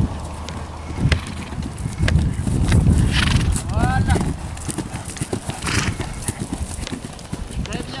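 A horse cantering on grass, its hoofbeats thudding, with a short whinny about four seconds in.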